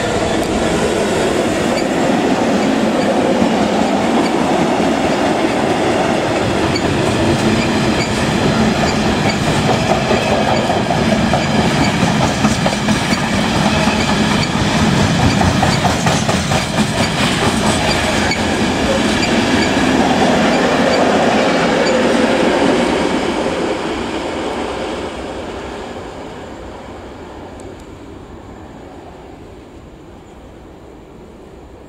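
Colas Rail Class 66 diesel freight locomotive, with its EMD two-stroke V12, passing close by and hauling a long train of engineers' wagons. The wagons' wheels clatter over the rail joints. The sound stays loud for most of the time, then fades over the last several seconds as the train draws away.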